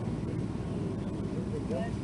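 Faint voices in the background over a steady low rumble of outdoor ambience, with no loud event.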